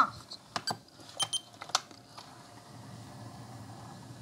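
Sharp plastic and metal clicks from handling a Panasonic RQ-NX60V personal cassette player and working its controls, about six in the first two seconds, followed by a faint steady hum.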